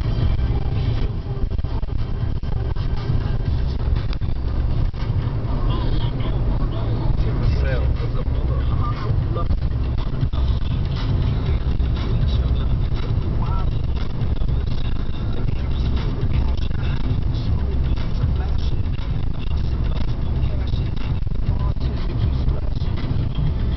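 Steady low rumble of a car travelling at highway speed, heard from inside the cabin: road and engine noise.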